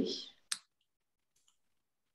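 A voice trails off, then a single sharp click about half a second in, followed by near silence with a couple of faint ticks.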